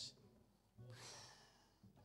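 Near silence, broken about a second in by a single breath out into a handheld microphone, lasting well under a second.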